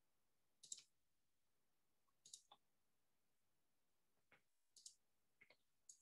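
Near silence broken by faint computer mouse clicks, a handful of short clicks, several in quick pairs, spread over the few seconds.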